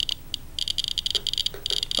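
Radiation Alert Inspector USB Geiger counter chirping rapidly and irregularly, one high-pitched chirp per detected count, at a raised rate of about 500–600 counts per minute from the gamma rays of a person injected with technetium-99m. The chirps thin out in the middle and come thick again from about one and a half seconds in.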